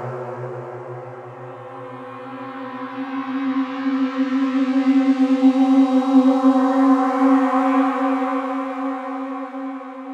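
Krakli S3 string-machine synthesizer playing a sustained synthetic string pad. A low note fades away over the first couple of seconds, while a higher held note with its overtones swells to a peak about midway and then slowly dies down.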